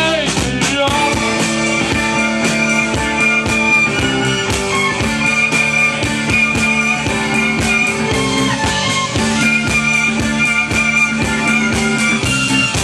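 Live rock band playing an instrumental passage with no singing: a drum kit keeping a steady beat under electric guitars and long held notes.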